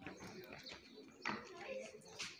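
Faint voices of children calling out, the loudest shout about a second and a quarter in.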